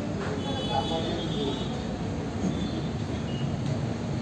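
Steady low background rumble with faint indistinct voices and a few thin high squeaks.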